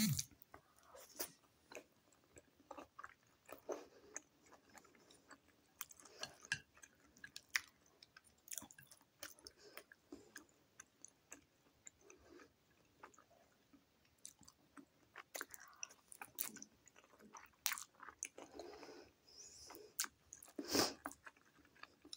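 Close-miked chewing of vegetable gyoza dumplings and noodles: soft, wet mouth sounds broken by many small clicks, with one louder burst near the end.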